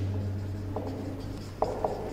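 Marker pen writing on a whiteboard, a few short squeaky strokes of the tip, over a steady low hum.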